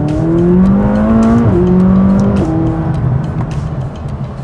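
McLaren 570GT's 3.8-litre twin-turbocharged V8 accelerating hard as the car drives up to and past the camera. The engine note climbs and drops sharply twice as the dual-clutch gearbox shifts up, then fades as the car goes by.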